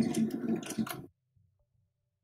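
Domestic electric sewing machine stitching through layers of fabric, its motor running with rapid needle clicks, then stopping abruptly about a second in.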